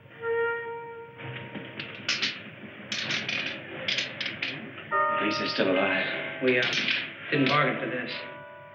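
Film soundtrack: a held woodwind-like note, then from about a second in a run of rapid clattering bursts, joined a few seconds later by warbling, wavering electronic tones.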